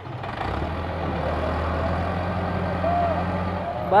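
Massey Ferguson 385 tractor's four-cylinder diesel engine running hard at steady high revs under heavy load as it strains to pull an overloaded sugarcane trolley. The engine note swells about half a second in, holds level, and falls away just before the end.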